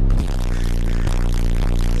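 A loud, deep droning note, steady in pitch and rich in overtones, that starts suddenly and holds unchanged.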